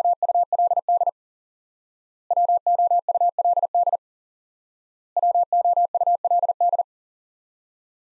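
Morse code at 40 words per minute, a single steady-pitched beep tone keying the word 'would' over and over: the end of one sending, then two full sendings, each a quick run of dits and dahs lasting about a second and a half, with a pause of about a second between.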